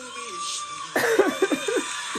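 A man's loud laughter breaking out about a second in, in short rising and falling bursts. Before it, the singing from the audition clip plays more quietly.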